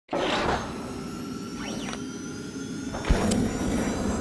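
Electronic logo-intro sound design: whooshing sweeps over steady synthesized tones, with a short rising-and-falling glide in the middle and a sharp low hit about three seconds in, the loudest moment.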